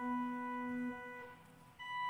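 Organ playing slow, sustained chords. The level drops for a moment about three quarters through, then a new chord comes in.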